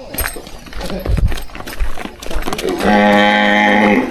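A cow lets out one long, steady moo near the end, after a stretch of soft thuds and scuffs of steps on a dirt path.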